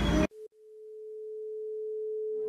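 A single steady electronic tone fading in and slowly growing louder: the opening note of ambient background music.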